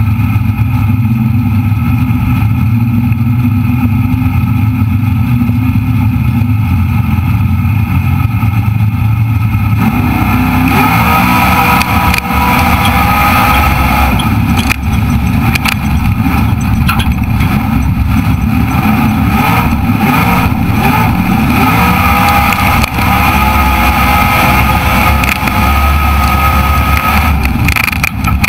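Race car engine heard from an onboard camera: a steady low note for the first ten seconds or so, then revving up and easing off again and again as the car drives hard, with a loud rushing noise over it.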